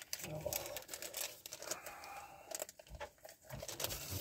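Food packaging crinkling and rustling in someone's hands as a packet is opened, in irregular crackles.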